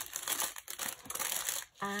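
Clear plastic packaging bag crinkling as an item is pushed back into it and handled, the crinkle easing off near the end.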